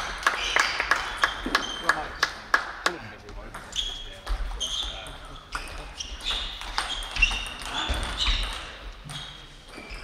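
Table tennis ball clicking sharply off paddles and table: a quick run of clicks in the first three seconds, then a sparser rally.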